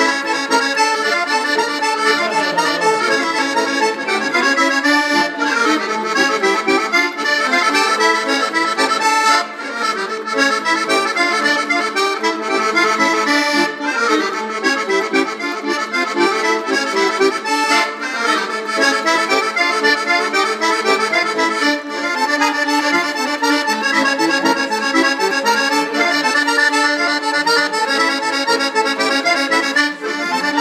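Solo button accordion, played acoustically with no other instruments, playing a corridinho, a Portuguese folk dance tune, in continuous flowing notes.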